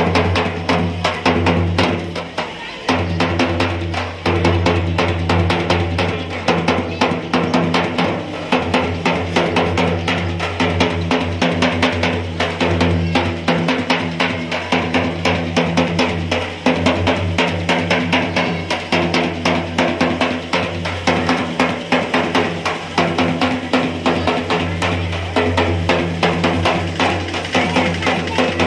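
A drum beaten in a fast, steady rhythm as procession music, over sustained low-pitched musical tones.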